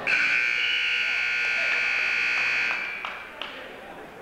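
Wrestling scoreboard timer buzzer sounding one loud, steady tone for nearly three seconds, stopping the action at the end of a period.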